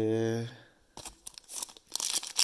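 A short held hum from a man's voice, then the faint, scattered crinkling of a foil trading-card pack wrapper being picked up and handled.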